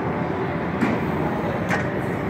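Steady mechanical rumble of a batting cage's pitching machine, with two sharp knocks about a second apart as a pitch comes through and the boy swings.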